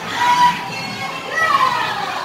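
Chatter and raised voices of a crowd of visitors, with no clear words.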